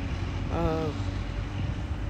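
Steady low rumble of street traffic, with a woman's short hesitating "uh" about half a second in.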